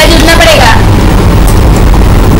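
A loud, steady low rumble with a woman's voice speaking briefly at the start.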